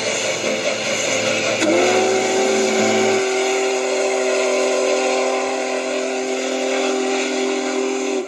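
Steam locomotive whistle of Union Pacific Big Boy No. 4014 sounding one long chord. It slides up into pitch about two seconds in and is held for about six seconds. It is heard through a laptop's speaker.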